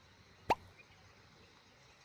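A single short plop with a quick upward sweep in pitch, about half a second in, over faint background.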